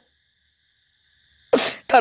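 A pause of near silence, then about one and a half seconds in a short, sharp breath hiss into the microphone, and a man starts speaking again.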